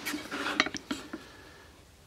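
A pencil scratching marks on a wooden board through the holes of a thin steel square, with a few light clicks of the metal square against the wood. It dies away after about a second.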